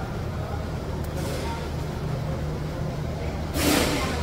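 A steady low mechanical hum, with a short burst of hiss near the end.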